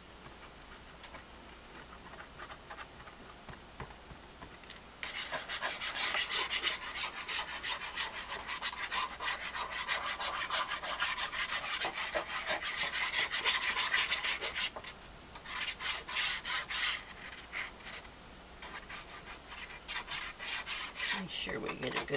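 Sponge ink dauber scrubbed along the edges of a manila file folder, making a rapid run of dry, raspy strokes on the paper. The scrubbing starts about five seconds in, runs steadily for about ten seconds, then comes back in two shorter bursts near the end.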